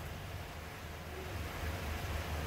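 Steady low background hum with a faint even hiss, and no distinct handling or string sounds.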